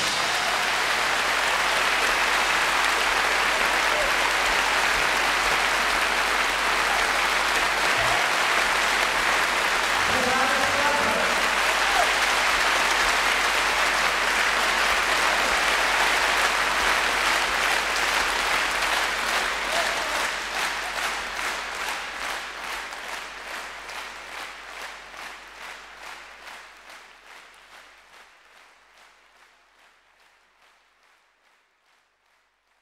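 A concert audience applauding at the end of a live song, the clapping steady at first and then fading away over the last ten seconds or so.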